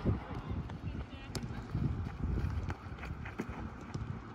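Children's and coaches' voices calling out across an open football pitch, with a few sharp knocks of footballs being kicked and bounced.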